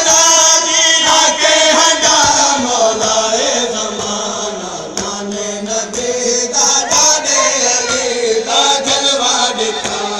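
Voices chanting a noha, a Shia mourning lament, in a continuous sung line, with sharp hits scattered through.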